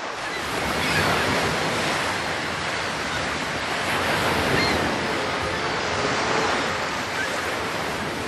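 Ocean surf: a steady rushing wash of waves that swells about a second in and eases slightly near the end.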